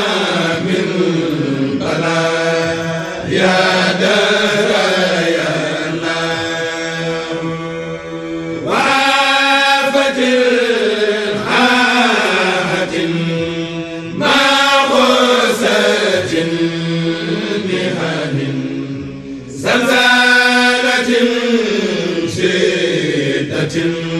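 Voices chanting an Arabic devotional supplication poem in long, drawn-out melismatic phrases, a new phrase starting about every five seconds, over a steady low held note.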